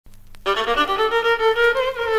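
Instrumental opening of a Hungarian csárdás medley, a violin playing the melody over accompaniment; the music begins about half a second in.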